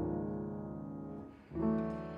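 Solo grand piano playing slow, soft jazz chords: one chord struck at the start and another about a second and a half in, each left to ring and fade.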